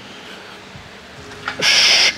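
Faint room tone, then near the end a short, loud hissing breath of effort, about half a second long, as the lifter ducks under the barbell.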